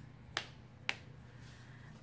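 Two short sharp clicks about half a second apart as the stiff cardstock pages and flip-up flaps of a handmade paper mini album are handled and turned.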